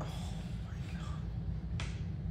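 A sheet of paper being handled, with one sharp, crisp snap near the end, over a low steady room hum.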